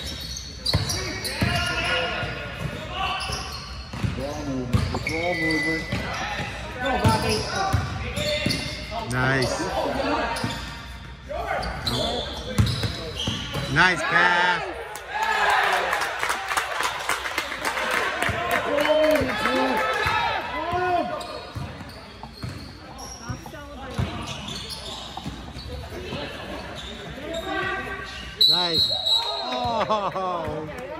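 A basketball bouncing on a wooden gym floor in play, with short knocks throughout, among players' and onlookers' voices echoing in a large hall.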